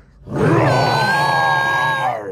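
A cartoon Tyrannosaurus rex roar: one long, loud, rough roar that starts about a third of a second in and holds steady with a high ringing tone through it.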